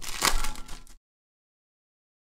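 Clicks and handling noise from a clear plastic card holder, with one sharp click about a quarter second in. About a second in, the sound cuts off to total silence.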